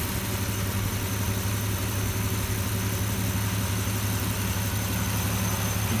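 Jeep Cherokee engine idling steadily, with the air conditioning switched on while R134a refrigerant is charged into the system and high-side pressure builds.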